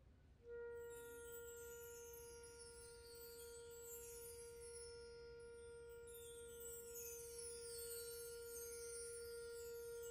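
Wind band opening a piece softly: a single high note comes in about half a second in and is held steadily throughout, with a faint bright shimmer above it.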